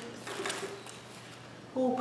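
Faint rustling of plastic-packaged craft items and cards being handled and picked up, followed near the end by a woman's short "oh".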